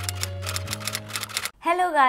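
Logo intro sting: a held low synth chord under a quick run of sharp typewriter-like clicks. It cuts off about a second and a half in, and a voice comes in just after.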